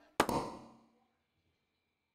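A sharp double knock, two hits in quick succession just after the start, with a short ringing tail that dies away within about a second.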